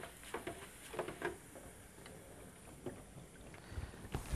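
Faint bubbling of sliced okra deep-frying in oil in a countertop deep fryer, with a few light knocks of the wire fry basket, the last as it is lifted near the end.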